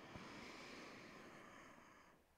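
A faint, slow breath drawn in through the nose on a cued inhale, fading away over about two seconds.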